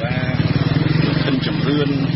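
A voice reading a radio news broadcast over a steady low buzz that runs on without a break.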